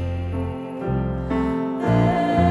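Instrumental hymn accompaniment without singing: held chords over a low bass line, changing about every half second.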